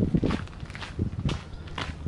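Footsteps of a person walking on a gritty dirt path, about two steps a second.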